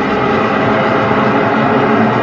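A loud, dense soundtrack drone, several steady tones under a rushing noise, swelled to full level and holding steady.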